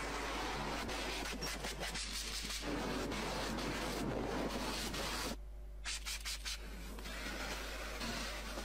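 A small white cleaning cloth scrubbed in quick strokes over car interior surfaces, the plastic door trim and leather seats, giving a dense rubbing rasp. It breaks off briefly a little past halfway, then goes on.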